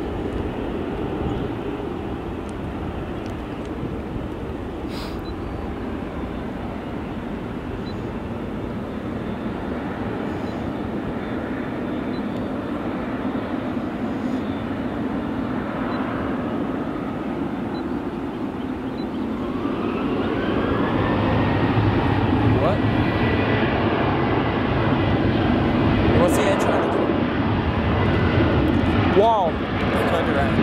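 Jet airliner engines with a steady low rumble. About two-thirds of the way through, a rising whine climbs and levels off as the sound grows louder: jet engines spooling up.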